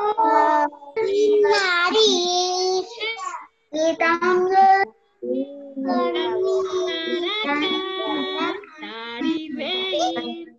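Young children and their teacher singing a children's action song together, with short breaks between lines.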